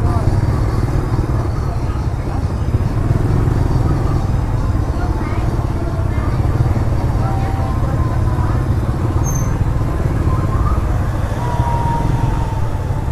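Busy market street: motorbike and scooter engines running and passing at low speed, over a steady low rumble and indistinct chatter of shoppers and vendors.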